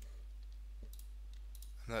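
A few faint, scattered clicks from a computer keyboard and mouse being worked, over a steady low hum. A man's voice starts just at the end.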